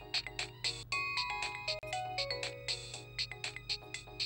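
Mobile phone playing a musical ringtone: a fast, even beat of about four to five clicks a second, with a short run of notes stepping downward about a second in.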